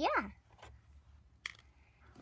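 Plastic toys handled, with one light click about one and a half seconds in against low room tone.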